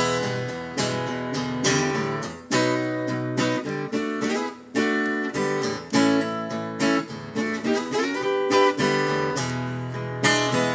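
Steel-string acoustic guitar strummed hard in a driving rhythm, with sharp chord strokes and changes of chord, played solo without vocals.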